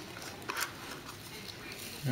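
Small cardboard trading-card box being handled and opened by hand: faint rustling and scraping of cardboard, with one short, sharper scrape about half a second in.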